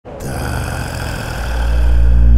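Low rumbling intro drone that swells into a heavy, steady bass about a second and a half in.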